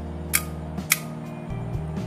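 Two sharp clicks about half a second apart as a bi-LED projector headlight is switched between high and low beam, over background music.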